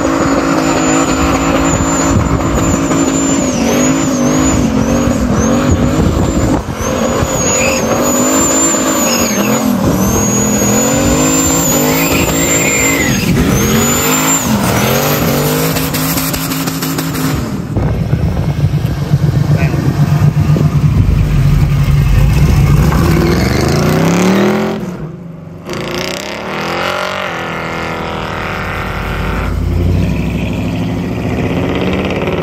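A car engine revving hard with its tyres squealing in a burnout, the high-pitched screech strongest in the first half. After that the engine settles to a lower, steadier note, then revs up again near the end.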